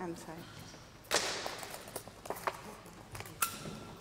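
Quiet voices and handling noises as people work at a board. There is a short, loud rustle or scrape about a second in, then a few light clicks and knocks.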